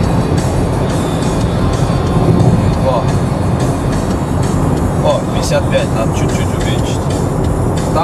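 Steady road and engine noise inside a car cruising at highway speed, a constant low rumble, with background music playing over it.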